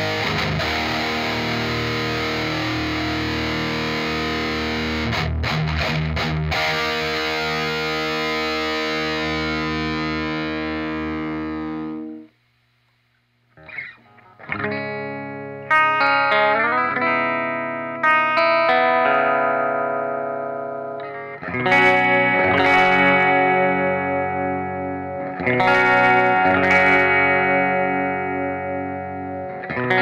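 Electric guitar played through an amplifier on its bridge humbucker, still mounted in its pickup ring: a distorted chord rings out and slowly fades, then after about a second of silence, chords are struck every few seconds and left to ring.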